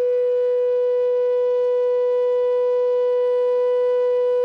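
A flute holding one long, steady note in Indian classical-style instrumental music.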